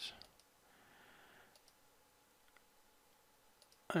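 A few faint, spaced-out computer mouse clicks, as the flood select tool is clicked on patches of sky in a photo editor.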